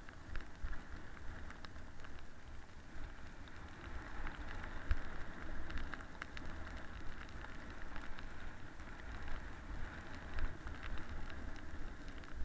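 A snowboard sliding down a snowy slope: a steady hiss and scrape of the board over the snow, with a low rumble and scattered small clicks and knocks.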